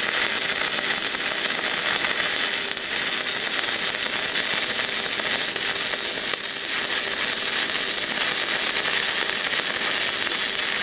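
Stick-welding arc of a 3/32-inch 7018 low-hydrogen electrode dragged along a beveled steel joint, running steadily for the whole stretch.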